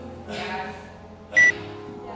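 One short, high electronic beep from a gym interval timer about one and a half seconds in. It is one of the countdown beeps that mark the last seconds before the workout's time cap. Background music plays underneath.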